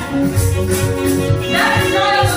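Gospel praise music with a steady beat and bass, and a woman's lead voice coming in on a new phrase about one and a half seconds in, with backing singers.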